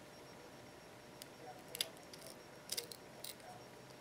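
Small scissors snipping through a thin wooden cutout: a few faint, short snips spread over a couple of seconds.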